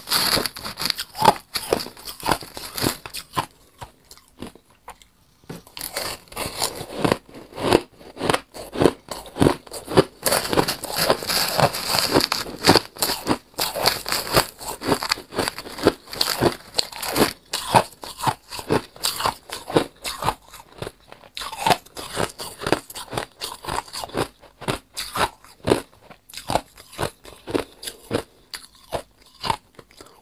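Shaved ice crunching as a metal spoon digs and scrapes through a plastic tub of powdery shaved ice, a thick stream of irregular crunches with a short lull a few seconds in.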